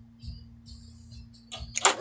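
A steady low hum and faint background music during bench soldering. From about one and a half seconds in comes a louder rattle of handling as the soldering iron is set back in its metal holder.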